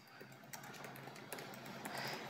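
Faint typing on a computer keyboard: a scatter of soft key clicks as a command is entered.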